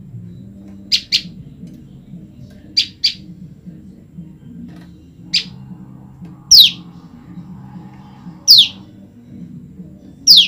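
A female prenjak lumut (ciang) songbird calls for her separated mate. She gives sharp, very short high chips, first in two quick pairs, then a single one, followed by two slightly longer calls that sweep downward in pitch.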